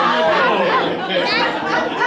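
Several people chattering over one another, with laughter mixed in.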